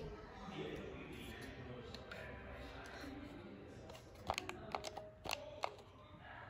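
Faint, steady room noise, then a quick run of about five short, sharp clicks in the last two seconds: buttons pressed on a ceiling fan's handheld universal remote while trying to get it to run on low speed.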